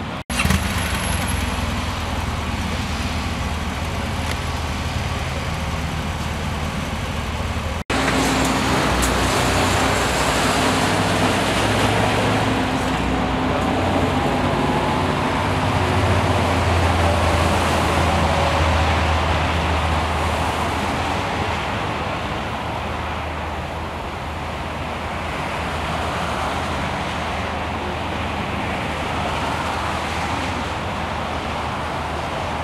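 Steady motorway traffic noise: cars passing at speed on a highway, with a constant low rumble. The sound cuts out briefly twice, just after the start and about eight seconds in.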